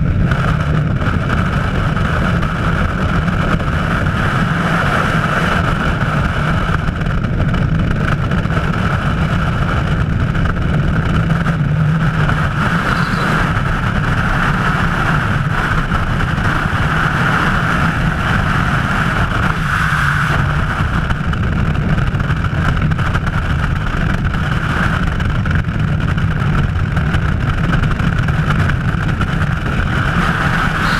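Freefall wind rushing past a skydiver's helmet camera microphone: a loud, steady roar with a constant whistle above it.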